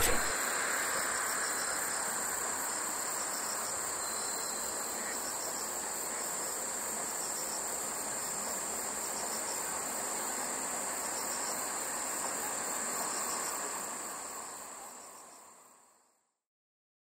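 Crickets in lakeside grass trilling in a steady, high-pitched chorus over a soft even background hiss. The sound fades out over the last two seconds or so.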